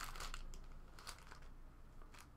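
Faint crinkling and rustling of thin plastic packaging as a black plastic card pouch is opened and handled, in a few short, soft bursts.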